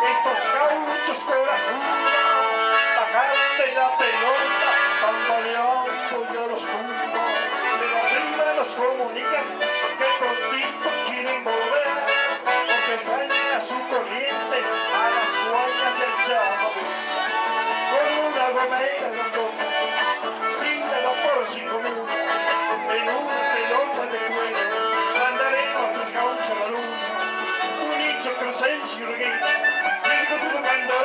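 Live chamamé band playing at a steady loud level: an accordion carries the melody over an electric bass and an acoustic guitar.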